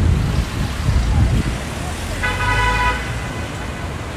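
Low, steady rumble of road traffic, with a single car horn toot lasting under a second about two seconds in.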